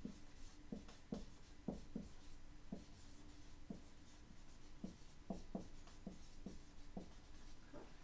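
Dry-erase marker writing on a whiteboard: about a dozen short, irregular strokes as letters are drawn, faint.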